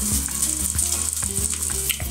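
Food frying in a pan: a steady, even sizzle.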